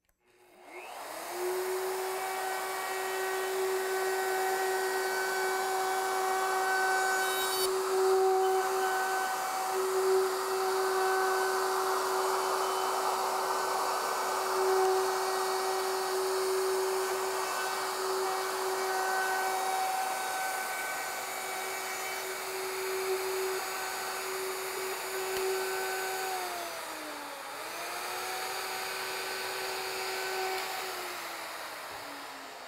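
Handheld plunge router spinning up about half a second in, then running at full speed with a steady high whine while a profiling bit cuts along the edges of a wooden board, the noise of the cut under the whine. Near the end the whine sags in pitch for a moment under the cut and comes back up.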